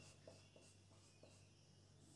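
Faint strokes of a marker writing on a whiteboard, a few short scratches in the first second or so, over a steady low hum.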